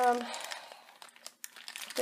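Packaging crinkling as small plastic toy pieces are handled, followed by a few light clicks.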